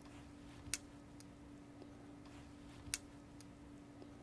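Two faint, sharp clicks about two seconds apart as metal pins are pushed into a cockroach leg on the cork pad of a small circuit board, over a faint steady hum.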